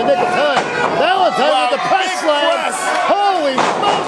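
Wrestling fans shouting and yelling over one another, with a few sharp thuds of wrestlers hitting the ring.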